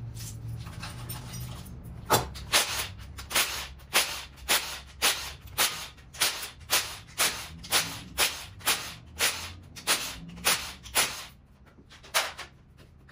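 Cordless impact wrench fired in short, sharp bursts, about two a second, starting some two seconds in and stopping near the end, as it spins out bolts on top of a Toyota 2ZR-FXE engine during teardown.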